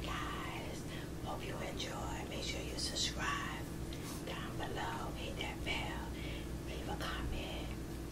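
Whispered speech: women whispering toward the microphone, over a steady low hum.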